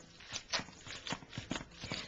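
A masher being pushed into soft steamed cauliflower in a stainless steel bowl: a series of irregular soft knocks and clicks, several a second, as it squashes the florets and strikes the bowl.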